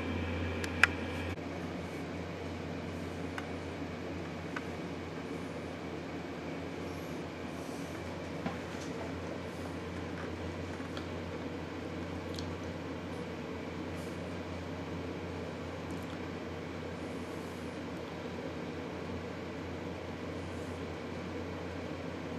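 Steady room hum, like air conditioning, with one sharp click about a second in and a few faint ticks and taps later.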